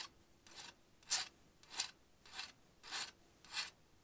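Hand file rasping along the cut edge of a thin sheet-metal soft jaw in about seven short strokes, a little over half a second apart. It is deburring the sharp edges left by the shears.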